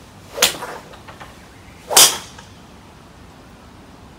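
Two golf shots about a second and a half apart, each a sharp crack of a club striking the ball; the second is the louder. A steady hiss of rain runs beneath.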